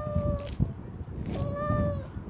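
Two long meows at a steady pitch: one ends about half a second in, and the next starts about a second and a half in.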